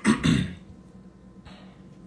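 A man clearing his throat: a short, loud double rasp within the first half-second.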